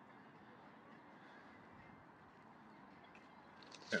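Faint, steady outdoor background hiss with no distinct event.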